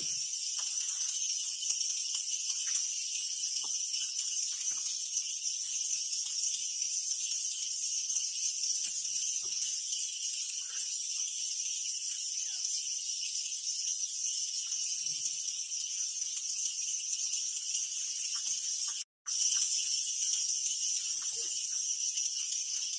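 Steady, high-pitched insect chorus buzzing without a break, with faint small ticks beneath it. It cuts out for a moment near the end.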